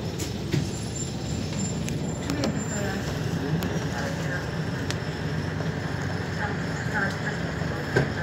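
Inside the cabin of a Volvo B10BLE city bus, the diesel engine runs with a steady low rumble. A few sharp clicks come from the cabin, and a thin high tone sounds for about two seconds near the start.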